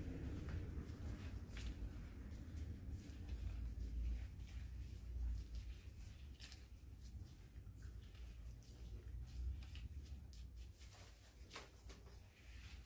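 Tint brush and comb working hair dye through dye-coated hair: faint soft brushing and sticky strokes with scattered light clicks over a low rumble.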